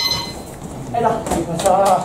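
A voice saying "ahí está" in Spanish, opening with a short ringing tone that fades within half a second.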